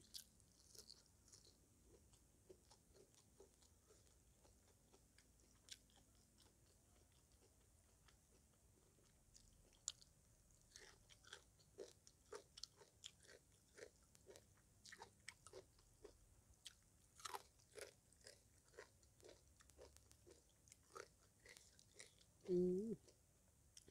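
Faint close-up chewing and crunching of raw vegetables and spicy papaya salad, with soft wet mouth clicks. The bites are sparse at first and come about two a second in the second half.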